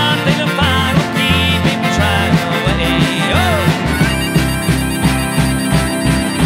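Live band playing an instrumental break, with a harmonica played into a cupped microphone over electric and acoustic guitars, upright bass and drums. The texture changes to a more even, steady groove about four seconds in.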